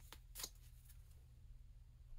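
Near silence over a low steady hum, broken by two faint, brief rustles of a deck of affirmation cards being handled in the first half second.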